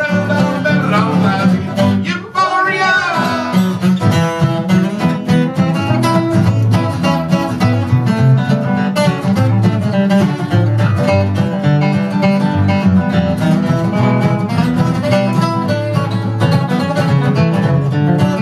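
Two steel-string acoustic guitars playing an instrumental passage together, strummed chords under picked melody notes, with a brief wavering, bent note about two seconds in.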